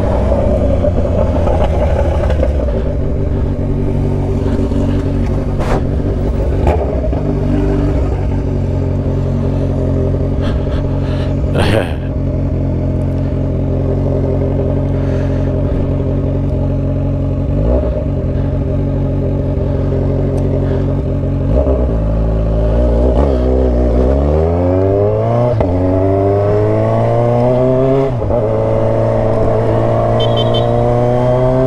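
Motorcycle engine running steadily at low speed in traffic, with a short sharp clatter about twelve seconds in. About three-quarters of the way through, it accelerates hard, its pitch climbing, with a brief dip near the end as it shifts up a gear.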